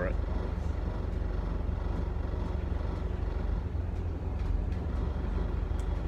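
Steady low vehicle rumble, an even drone with no clear rises or falls.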